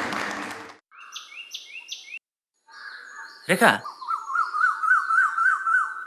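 Applause fades out in the first second. Then birds call outdoors: three short rising chirps, a brief gap, and from about four seconds in a steady warbling bird song, with a short falling sound just before it.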